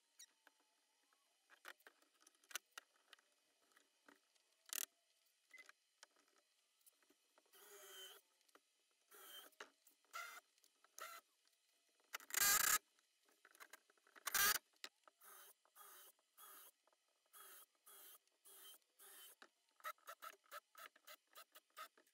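Faint workshop handling noises of a plywood fence and quick-grip bar clamps being set on a plywood sled base: scattered scrapes and clicks, two louder knocks about halfway through, then a run of quick, evenly spaced clicks near the end.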